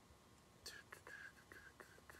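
Near silence: room tone, with a few faint clicks and a soft hiss that starts a little way in.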